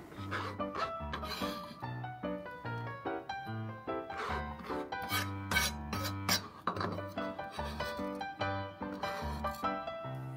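Background music with a melody over a stepping bass line. A few light scrapes and clinks of a kitchen knife on a cutting board come about halfway through.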